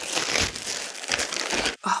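A plastic poly mailer bag being torn open and crinkling as a garment is pulled out of it; the rustling cuts off sharply just before the end.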